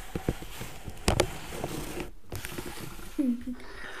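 A KiwiCo wooden toy mechanical sweeper handled on a table over pom-poms: a few clicks and knocks of its wooden frame and wheel, the loudest about a second in. A child's short laugh comes near the end.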